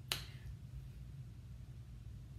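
A single finger snap, sharp and short, about a tenth of a second in, followed by a low steady hum of room tone.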